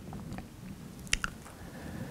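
A quiet pause with two faint, short clicks a little after a second in, over low room tone.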